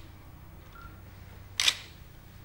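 A single short camera shutter release about one and a half seconds in, over a low steady room hum.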